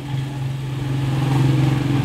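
A motor vehicle's engine running with a steady hum, growing louder over the first second and a half, then cutting off abruptly at the end.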